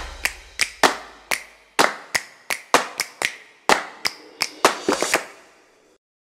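Intro sting made of sharp percussive hits, about eighteen in an uneven, quick rhythm, each dying away briefly. The hits stop a little after five seconds in.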